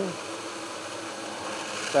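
Small centrifugal blower fan running steadily with its outlet duct unhooked from the bin, so it works against no back-pressure and runs quiet, as a smooth, even rush of air.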